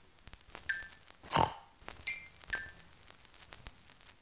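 A single short pig oink about a second in, set among a few brief high-pitched blips over a faint crackle.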